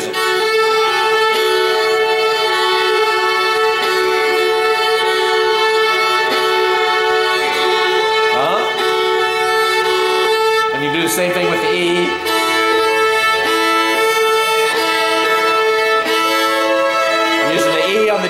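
Fiddle bowing long, steady double stops in a practice exercise: a fingered note on the D string held against the open A string, starting from F-sharp and A. There is a brief slide in pitch about halfway, and the lower note steps down about two-thirds of the way through while the open A keeps sounding.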